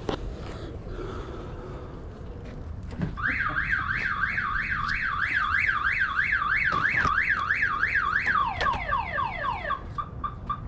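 Car alarm siren going off: a fast series of rising whoops, about three a second, then a run of quick falling tones near the end.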